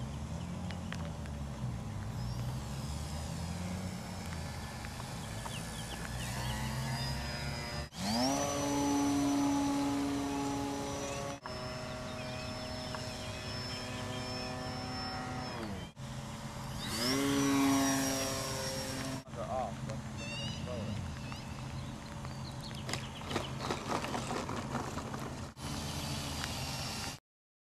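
Brushless electric motor and propeller of an RC Super Cub model plane, its whine rising sharply in pitch as it throttles up about 8 s in and again about 17 s in, holding steady, and dropping away near 15 s. The sound comes in several separate clips with abrupt cuts between them.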